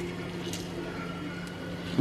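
Quiet kitchen room tone with a steady low electrical hum and a faint click about half a second in.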